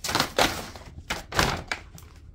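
Printed photos dropped by the handful into a brown paper bag: a quick series of papery thumps and rustles.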